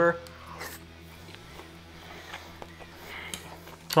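Faint chewing of a mouthful of tender meat, with a few soft clicks over a low steady hum.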